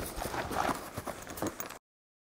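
Irregular knocks and rustles from a padded guitar gig bag and the envelope in its pocket being handled. The sound cuts off abruptly to silence near the end.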